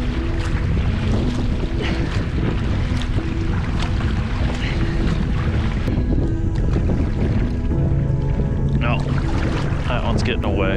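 Wind buffeting the microphone over open water, a steady low rumble, under background music whose short low notes repeat about once a second. Near the end a brief wavering, pitched call sounds.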